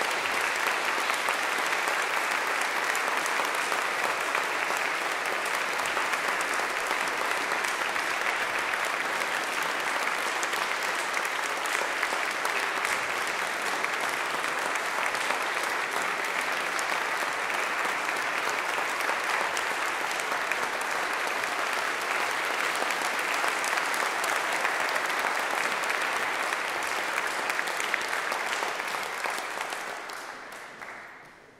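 Audience applauding steadily after a piano performance. The clapping is just beginning to die away at the very end.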